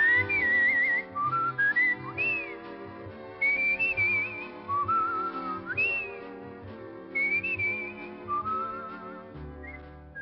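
Theme music: a whistled melody with wavering vibrato and pitch slides, in several short phrases, over soft orchestral accompaniment that fades near the end.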